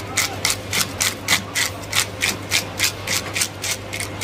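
Fish scaler scraping the scales off a large whole fish in quick, even strokes, about three rasps a second.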